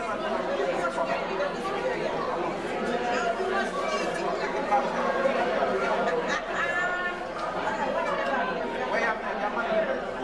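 Crowd chatter: many people talking at once in a large hall, their overlapping voices blending into a steady babble with no single voice standing out.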